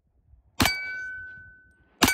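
A 9mm pistol shot from a Springfield Armory Prodigy 1911 DS about half a second in, followed at once by the clear ring of the struck steel target dying away over about a second. A second shot and ring begin right at the end.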